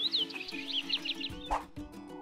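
Soft background music with a jungle ambience effect of rapid, high, bird-like chirps through the first second or so, and a brief swish about three-quarters of the way in.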